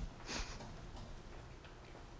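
Quiet room tone with one short breathy hiss about a third of a second in, then a few faint light taps.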